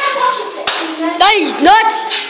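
Young people's voices shouting, with two high yelps that swoop down and back up in pitch just past the middle. Before them comes a single sharp smack.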